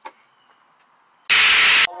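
Phone microphone being handled: a loud, harsh burst of rushing noise about half a second long, a little over a second in, after near quiet.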